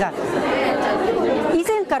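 Many people talking at once in a large hall, a steady chatter of overlapping voices; a woman's voice starts up close near the end.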